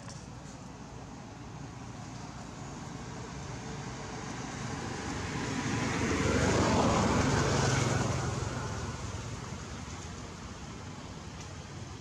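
A motor vehicle passing by: its engine and road noise swell to a peak about seven seconds in, then fade away.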